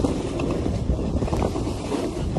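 Heavy wind buffeting the microphone of a camera carried at speed down a snowy slope, a steady rush mixed with the hiss of the rider's edges sliding through snow.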